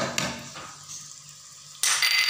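Chicken stir-fry sizzling faintly in a nonstick pan, with a couple of short knocks at the start as seasoning is added. Just before the end comes a sudden louder burst of a wooden spatula stirring and scraping in the pan.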